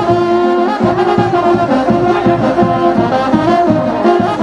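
Brass band playing festive dance music, trumpets and trombones holding melody notes over a steady drum beat.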